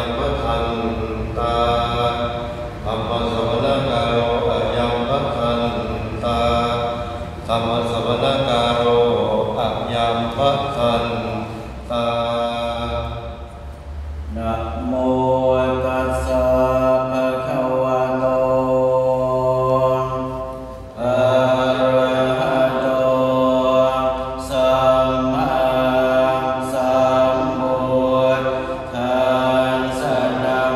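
A group of Thai Buddhist monks chanting in Pali in unison, in long phrases held on a nearly steady pitch, with short breaks for breath.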